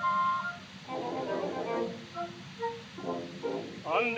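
A small orchestra plays a short instrumental passage of held notes and brief figures between the singers' phrases of an operatic duet. It comes from a 1915 acoustic disc recording, with a steady surface hiss under the music.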